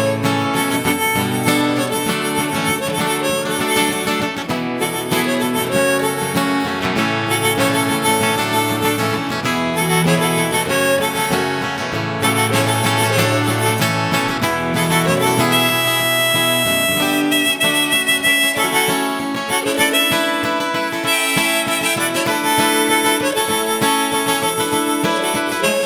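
Live band music: harmonica playing a lead over acoustic guitars and bass, taken straight from the mixing desk.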